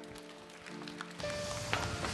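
Background music of soft sustained chords. About a second in, a rush of noise with a few sharp knocks swells over it and becomes the loudest sound.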